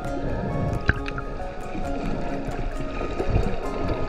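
Background music with a steady beat: held notes over a regular tapping pulse.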